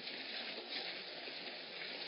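Steady outdoor background hiss picked up by a Nest security camera's microphone, even throughout with no distinct events.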